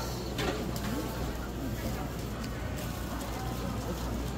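Busy market background: several people talking indistinctly over a steady low hum, with a few faint clicks.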